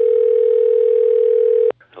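Telephone call tone: one loud, steady electronic tone that cuts off sharply just before the end, the signal of an incoming call being answered.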